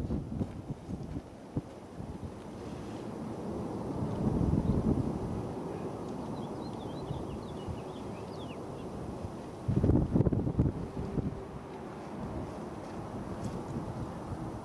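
Wind buffeting the microphone in gusts, about four seconds in and again around ten seconds, over a steady low rumble from a Boeing 787-9's engines as the airliner slows on the runway after landing.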